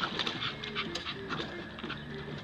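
Staffordshire bull terrier panting while paddling at the pool ladder, with water splashing around it.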